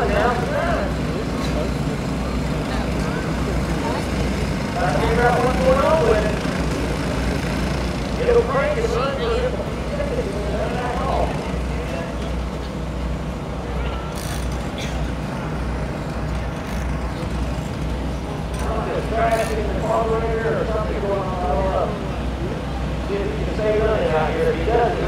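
Indistinct voices talking on and off, in several short stretches, over a steady low rumble.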